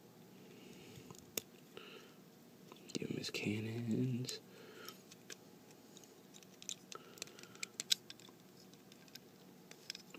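Small hard plastic toy parts clicking and scraping as they are handled and pressed onto a small action figure, with scattered sharp clicks that come more often in the second half. A short low mutter from the person about three seconds in is the loudest sound.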